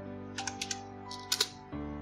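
Computer keyboard being typed on: a quick run of about four keystrokes about half a second in, then two sharper ones a little later, as digits of a phone number are entered. Soft background music with held notes plays underneath.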